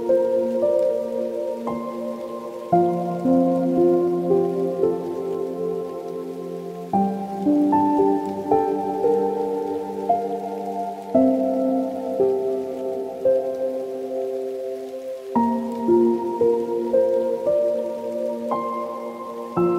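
Slow, soft solo piano music, with held chords and a quiet melody over them, the harmony shifting every few seconds.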